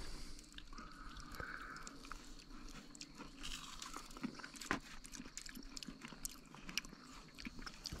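Faint chewing of a bite of battered fried carp, with soft crunches and mouth clicks scattered through.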